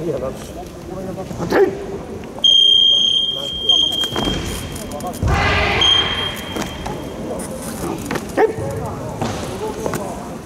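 Referee's whistle: one long blast of about a second and a half, then a short second blast a couple of seconds later, calling for the judges' flag decision in a karate kata match and then for the flags to come down. Voices in the hall and a brief burst of crowd noise between the two blasts.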